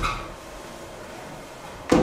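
School furniture being moved: a scrape fading out at the start, then a sudden knock and a scrape near the end, as a chair or table is shifted.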